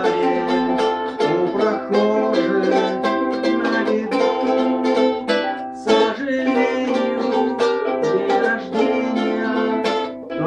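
Ukulele strummed in a steady rhythm of chords.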